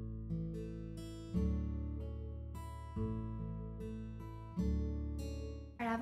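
Background music: acoustic guitar playing plucked chords, a new chord sounding every half second to second and a half and ringing on between them.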